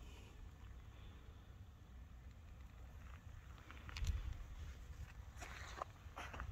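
Faint wind rumble on the microphone, then about four seconds in a thump followed by the rustle and crunch of footsteps through rapeseed plants.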